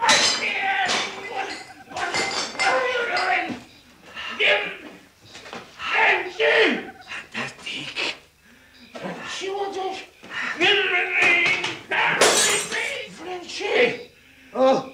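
A drunken man's voice, slurred and without clear words, rising and falling in pitch, with a crash of breaking glass about twelve seconds in.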